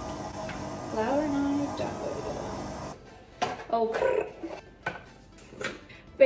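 Kitchen sounds: a steady hum with a brief voice over it about a second in, then, from about halfway, scattered clicks and knocks of dishes and utensils on a counter with short vocal sounds.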